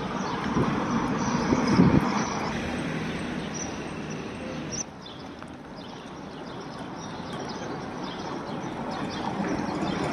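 Outdoor ambience: a steady rushing noise with no clear single source. It is louder in the first few seconds, drops suddenly about five seconds in, then slowly builds again.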